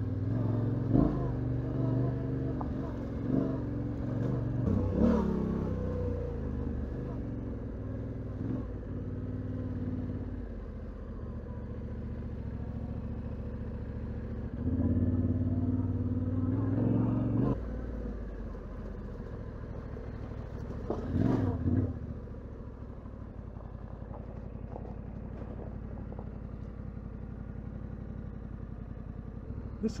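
Yamaha Ténéré 700's parallel-twin engine running at low speed on a rough dirt and gravel track, with a few brief rises in revs. It grows louder for a few seconds about halfway through, then settles quieter.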